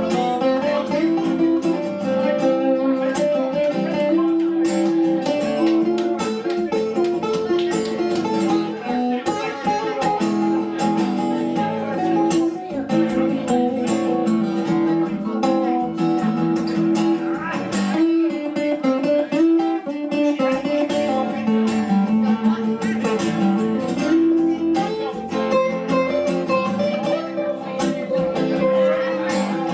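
Cutaway acoustic-electric guitar being played, a continuous run of picked and strummed chords.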